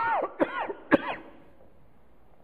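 A man coughing three times in quick succession, the coughs about half a second apart.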